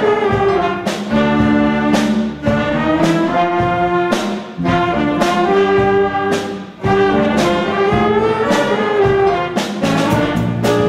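School jazz band playing a big-band tune: trumpets, trombones and saxophones in full ensemble over piano, bass and drums, with cymbal hits accenting the beats about once a second.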